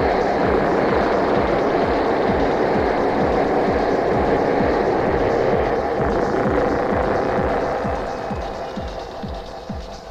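Techno with a steady four-on-the-floor kick drum, a little over two beats a second, under a dense layer of noisy synth sound. The layer fades away over the last couple of seconds, leaving the kick and lighter sounds.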